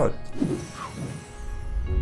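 Mechanical, ratchet-like transition sound effect for an animated number card, over soft background music. Near the end it swells into a low thump as the card appears.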